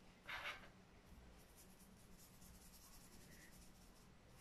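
Faint scratchy strokes of a paintbrush brushing food colour over a fondant-covered cake board, with one short, louder rustle near the start.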